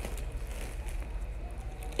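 Faint rustling of a fleece sweatshirt and trousers being handled, over a steady low hum.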